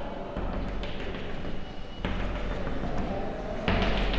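Chalk on a blackboard: a run of short scratchy strokes and taps as small dashes are drawn one after another.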